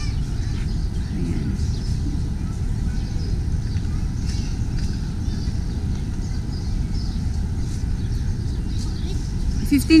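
Steady low rumble of wind on the microphone in an open park, with faint distant children's voices from the playground.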